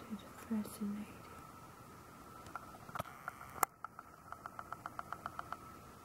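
A camera's lens mechanism clicking and then ticking rapidly, about ten ticks a second for just over a second, as the focus shifts and the picture blurs, over a faint steady whine. A couple of soft hummed voice sounds come in the first second.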